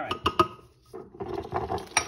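Metal top of a glass cocktail shaker being twisted and lifted off: a few quick clicks and scrapes in the first half second, then quieter handling noise and one last click at the end.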